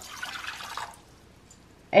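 Hot water poured from a glass measuring cup into an empty ceramic mixing bowl, splashing for about a second before stopping.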